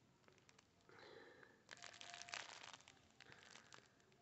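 Plastic film wrapping on a skein of cotton yarn crinkling faintly as it is handled in the hand, in short irregular spells from about a second in.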